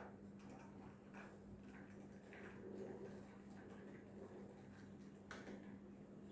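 Faint clinking of a long bar spoon against ice cubes and glass as a drink is lightly stirred in a highball glass, with one sharper click about five seconds in.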